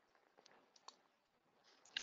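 Near silence with a few faint computer-mouse clicks, three in the first second.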